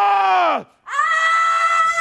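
A person screaming at full voice: one long held scream breaks off about half a second in, and after a short pause a second, higher-pitched scream is held through the rest.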